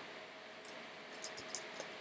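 A few faint small clicks and taps as the phone's logic board is shifted under the microscope, over a faint steady hum.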